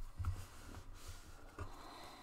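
Folded paper being handled on a tabletop, faint rustling with a few soft bumps.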